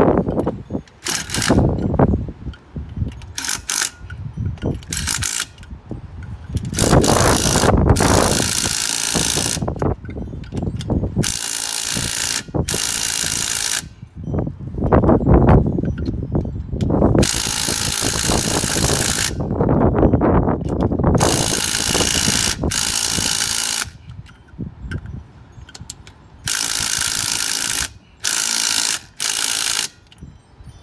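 Handheld cordless power tool with a socket running lug nuts onto a golf cart's aluminum wheel. It runs in repeated bursts, some short and several lasting one to two seconds, with pauses between them as it moves from nut to nut.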